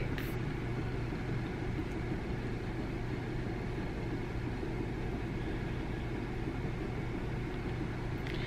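A steady low hum with a hiss over it, unchanging throughout: the constant drone of a running appliance or motor.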